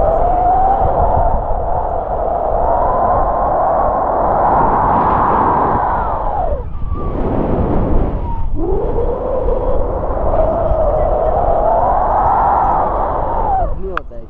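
Wind rushing over a camera carried in paragliding flight, with a loud whistling tone that slowly rises and falls in pitch. The whistle swoops down and cuts out about six and a half seconds in, comes back rising about two seconds later, and swoops down again near the end.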